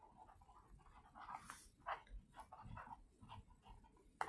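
Near silence: faint room tone with a few soft, scattered clicks and brief rustles.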